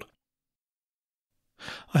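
Dead silence, then a man's audible in-breath about one and a half seconds in, just before he starts speaking again.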